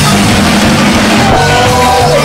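Live band playing an upbeat ska song at full volume, drum kit and bass line driving a steady beat, with held melody notes coming in about halfway through.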